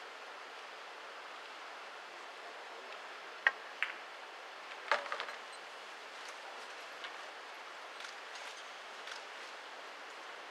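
Pool balls clicking during a shot: two sharp clicks in quick succession about three and a half seconds in, a cue striking the cue ball and the cue ball hitting an object ball, then a short cluster of ball clicks about a second later. A few fainter ticks follow over quiet room hiss.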